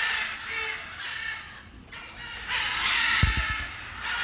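Macaws squawking harshly in two long bouts: one over the first second and a half, another from a little past halfway to the end. A brief low thump about three seconds in.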